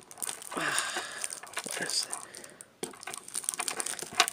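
Yu-Gi-Oh! trading cards and their plastic wrapping crinkling and rustling in the hands, with irregular soft ticks as the cards are handled.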